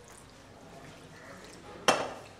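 Faint quiet room tone, then a single sharp metallic tap near the end: a dissecting instrument knocking against the metal dissecting tray.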